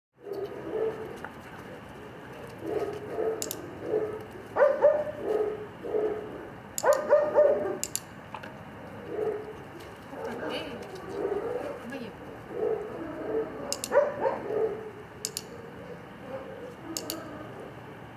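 A series of sharp clicks from a dog-training clicker, spaced a few seconds apart, with short voice-like sounds in between.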